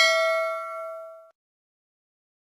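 Notification bell chime sound effect: a single bright ding that rings on with several tones and fades out after about a second.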